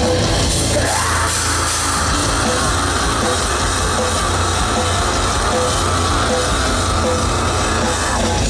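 Rock band playing live and loud, drums and electric guitars in a dense instrumental passage. About a second in, a long high note slides up and is held until near the end.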